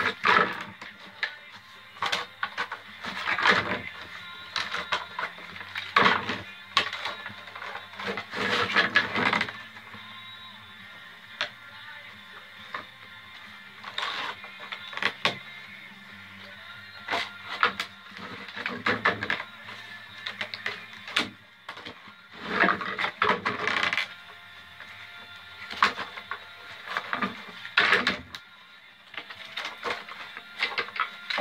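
White oak splints rasping and scraping as they are woven over and under basket ribs, in short irregular strokes. Music plays steadily underneath.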